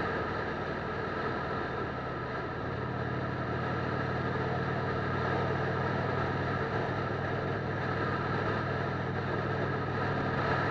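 Motorcycle engine running at a steady cruise, its low engine tone holding constant, mixed with rushing wind and road noise.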